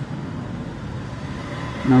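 Steady low background rumble and hiss with no distinct events. A man's voice starts a word at the very end.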